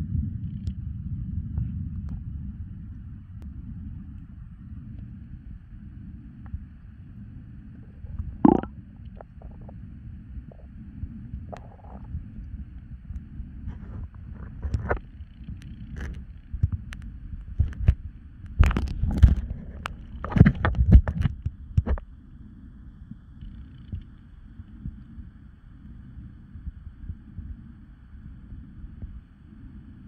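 Muffled underwater rumble of water moving against a submerged camera, with scattered clicks and knocks. There is one louder knock about a third of the way through, and a burst of louder knocks about two-thirds of the way through.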